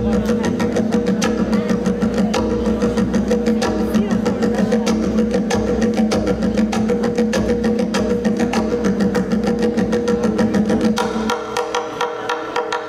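Tonbak (Persian goblet drum) played solo by hand: a fast, unbroken run of finger strokes over a steady deep drum tone. Near the end the deep tone drops away, leaving lighter, thinner strokes.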